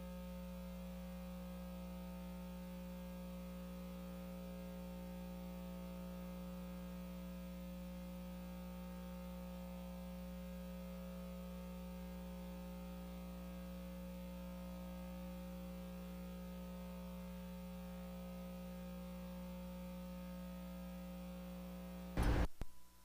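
Faint, steady electrical hum: a low buzz made of several fixed tones that does not change.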